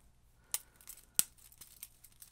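Split ring pliers working a steel split ring around a fishing lure's hook hanger: a few light metallic clicks, the sharpest about a second in.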